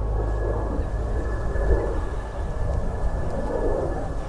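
Passenger aircraft flying low overhead on its approach to land: a loud, swelling and ebbing rush of engine noise with a steady high whine. Low wind rumble sits underneath.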